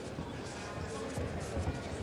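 Boxing-hall crowd noise with a music-like background and a few faint soft thuds.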